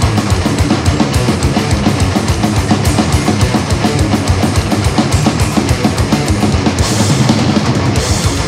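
Death metal played live by a full band: heavily distorted electric guitars over fast, unbroken drumming with kick drum and cymbals, loud and dense throughout.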